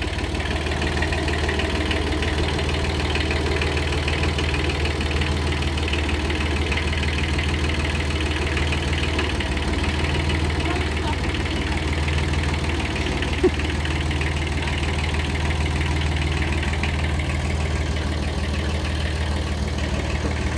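Kubota B7001 compact tractor's small diesel engine running steadily as the tractor drives slowly, with a single short click about thirteen seconds in.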